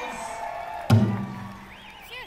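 A single hard stroke on a large powwow drum about a second in, its low boom ringing on and dying away. This is the drum group striking up the song. A pitched call fades out just before it.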